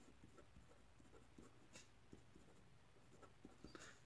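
Very faint marker-pen writing: small scratches and taps of the tip as handwritten words are formed, close to near silence.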